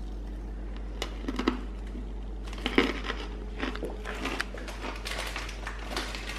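A plastic snack packet crinkling in someone's hands, in short irregular rustles, over a steady low hum.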